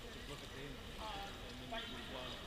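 Indistinct voices talking briefly over a steady hiss of echoing indoor-pool ambience.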